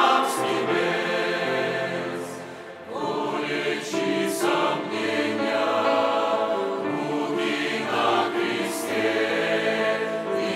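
Mixed choir of women's and men's voices singing a hymn in held chords, the sound dipping briefly between phrases about two and a half seconds in before the next phrase comes in.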